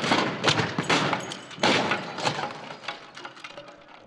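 Crash-test SUV rolling over onto pavement: a run of heavy crashing impacts and scraping, the loudest in the first two seconds, then dying away.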